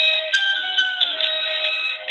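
A recording of the poem's bhavageete (Kannada light-music song) setting playing: a melody of held, sliding notes with accompaniment.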